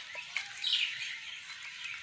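Birds chirping in the background over a low, even hiss.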